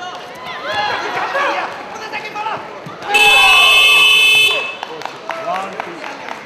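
Shouting voices, then a loud electronic buzzer sounding once about three seconds in, held steady for about a second and a half: the wrestling bout's timer buzzer signalling that the period has ended.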